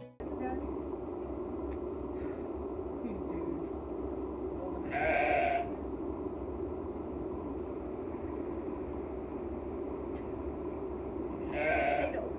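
A sheep bleating twice, two short calls about five seconds in and again near the end, over steady background noise.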